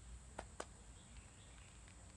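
Near silence: faint background, with two brief clicks about half a second apart near the start.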